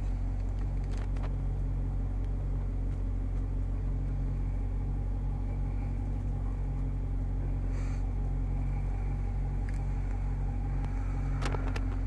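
The Challenger Scat Pack's 6.4-litre Hemi V8 idling steadily, heard from inside the cabin as a low, even rumble. A couple of faint clicks come near the end.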